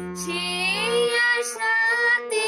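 Harmonium played in a slow melody, with a woman's voice singing along, her pitch gliding between the steady reed notes.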